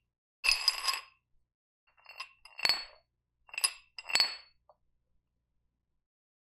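Metal clinking from a spin-lock dumbbell handle and its iron weight plates being shaken and knocked together. A short ringing rattle about half a second in is followed by about four separate sharp clinks over the next few seconds.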